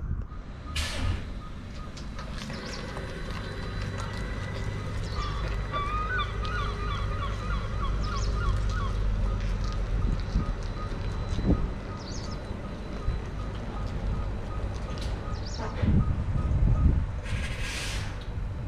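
Yutong TCe12 battery-electric coach manoeuvring at low speed: a low steady hum with an evenly repeating high warning beep through the middle, a short burst of hiss about a second in and another near the end, and louder low rumbling shortly before the end.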